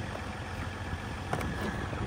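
Steady low rumble of an idling engine, with a single sharp click about one and a half seconds in.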